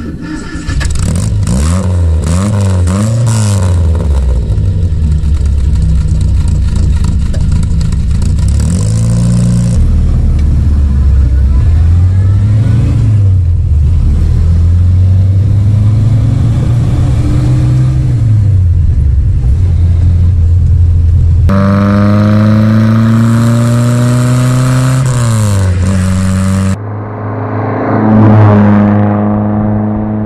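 Innocenti Coupé's small BMC A-series four-cylinder engine being driven hard, its pitch climbing under acceleration and dropping back again and again as it shifts through the gears. Near the end the car goes past close by and its sound fades as it pulls away.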